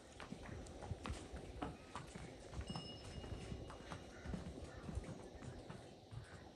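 A pony's hooves clip-clopping on stone paving at a walk: faint, irregular hoof knocks.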